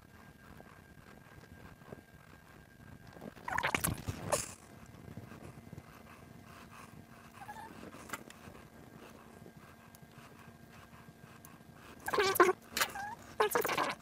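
Fingers working a rubber toothed timing belt into a 3D-printed plastic belt tensioner: brief scuffing and rubbing about three and a half seconds in and again near the end. In between it is quiet apart from a faint steady hum.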